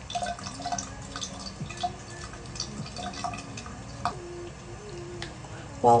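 Foaming cleanser and water being worked over the face with the hands: a run of small, irregular wet squelches, clicks and drips.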